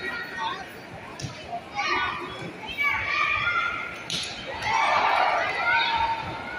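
Crowd of spectators in an indoor arena, many high voices talking and shouting at once, growing louder toward the end.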